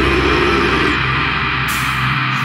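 Death-doom metal music: heavily distorted guitars and bass holding a low riff, with a bright crash near the end.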